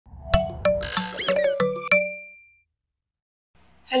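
A short musical intro sting: a quick run of struck, chiming notes with a few brief pitch glides, ending on a ringing note that fades out about two and a half seconds in.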